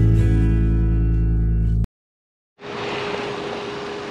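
Acoustic guitar music, a strummed chord ringing out, cuts off abruptly about two seconds in. After a brief dead silence, a steady outdoor hiss with a faint steady hum takes over.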